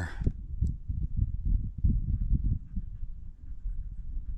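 Low, irregular buffeting and rumbling on a handheld camera's microphone, with muffled thumps throughout.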